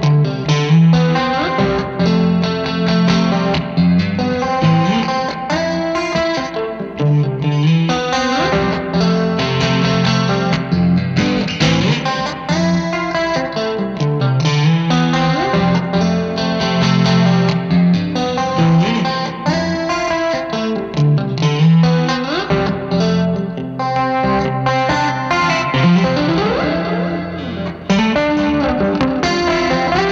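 Electric guitar with single-coil pickups played through a Vox AC10 tube amp with a very wet chorus effect: a melodic part of picked notes and chords with several sliding notes.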